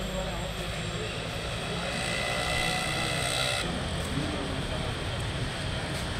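Steady engine-like drone with faint voices in the background; a high whining band joins in the middle and cuts off abruptly about three and a half seconds in.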